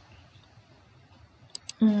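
Quiet room tone, then two sharp computer-mouse clicks about a second and a half in. A voice starts a hum right at the end.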